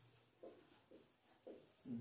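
Marker pen writing on a whiteboard: several faint, short strokes as letters are drawn.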